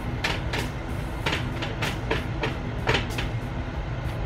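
Dry-erase marker scratching and squeaking on a whiteboard in a rapid run of short strokes, about three a second, over a low steady room rumble.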